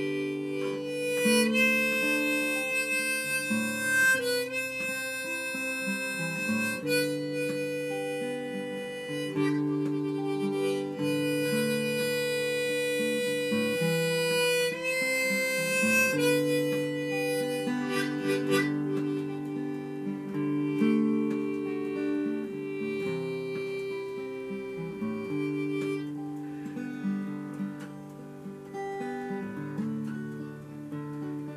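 Harmonica in a neck rack playing the melody over acoustic guitar chords, an instrumental introduction to the song. The harmonica falls away a little past halfway, leaving mainly the guitar.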